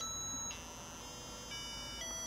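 Faint electronic beeping tones from an Arduino sketch that plays a note and then its octaves, changing every half second. A high note of about 1.3 kHz (E times 16) sounds first. The tone then resets to the low E of 82 Hz and climbs an octave each half second.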